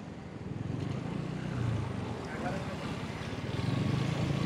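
A vehicle's engine running steadily at road speed, with road and wind noise.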